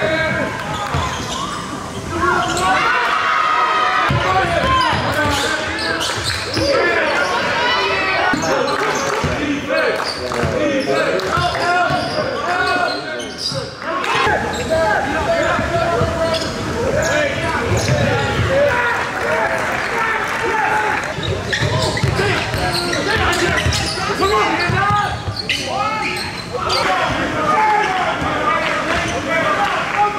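Live basketball game sound in a large indoor gym: a ball bouncing on the hardwood court, with players and spectators calling out.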